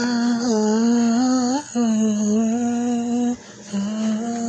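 A man singing a wordless melody in long held notes, in three phrases with two short breaths between them; the first phrase bends upward at its end.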